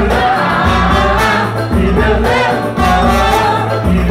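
Live samba band playing, with voices singing together over the group, and a trumpet and trombone in the horn section.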